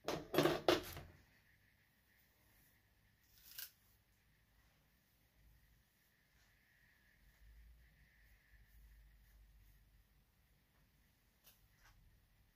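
Brief handling noises of hair styling: a quick cluster of three sharp rustling clicks at the very start and a single smaller one about three and a half seconds in, with quiet room tone between and a few faint clicks near the end.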